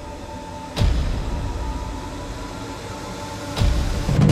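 Background cinematic music: a sustained droning pad with two deep boom hits, one about a second in and one near the end.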